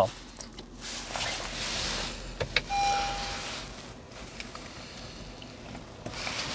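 Small electric motor whirring faintly as a power side mirror moves, then a click about two and a half seconds in and a short single-tone electronic chime in the car's cabin.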